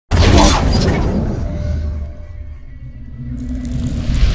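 Cinematic logo-intro sound design: a sudden loud crash-like hit with a low rumble that fades over about two seconds, a quieter stretch with a few faint held tones, then a noisy swell building near the end.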